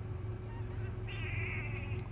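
A pet animal in the truck cab gives one short, high-pitched call lasting under a second, about a second in, after a faint high chirp. A steady low hum from the truck runs underneath.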